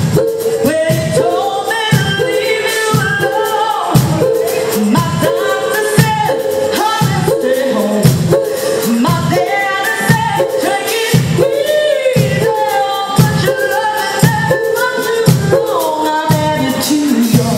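A live band playing a soul-pop song, with singing over a steady beat of about two low pulses a second.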